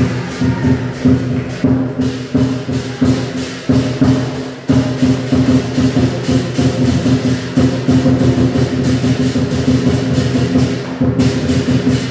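Chinese lion dance percussion: a big drum and clashing cymbals playing a fast, steady, driving beat to accompany the dancing lions.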